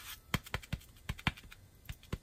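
Irregular light plastic clicks and taps, about seven in two seconds, as a photopolymer stamp on a clear acrylic block is dabbed and rubbed against a stamp cleaning pad to lift the ink from it.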